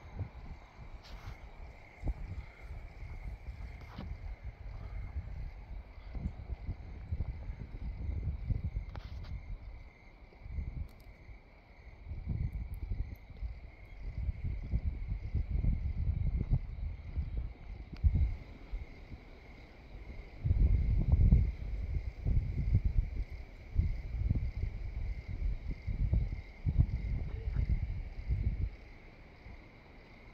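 Crickets chirping in a steady high-pitched band throughout, over irregular low rumbling on the microphone that swells and fades, loudest about twenty seconds in.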